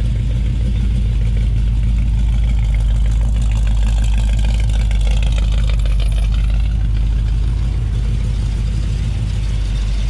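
1957 Chevrolet Bel Air's 350 V8 idling steadily through headers and dual exhaust, an even low rumble.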